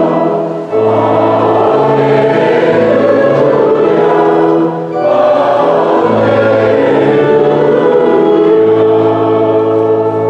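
Congregation singing the acclamation before the Gospel reading, with held bass notes underneath. It goes in two long phrases, with short breaths about a second in and about five seconds in.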